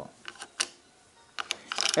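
A few light plastic clicks and taps from Happy Plugs wireless earbuds and their charging case being handled, twice in quick pairs: about half a second in and again about a second and a half in.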